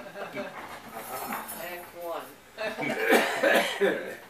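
Indistinct voices of people in the room talking, loudest in the second half.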